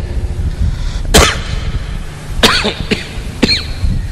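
A man coughing into a microphone, three coughs about a second apart beginning about a second in, over a steady low rumble.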